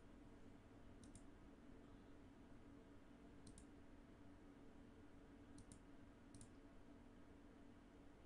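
Near silence with a faint steady hum, broken five times by faint sharp double clicks spread irregularly through it.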